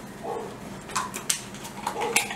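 Young Rottweiler-mix dog eating a treat taken from a hand: a few sharp crunching clicks about a second in.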